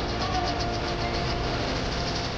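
A songbird giving a rapid run of short high notes, about eight a second, over the steady din of the contest ground.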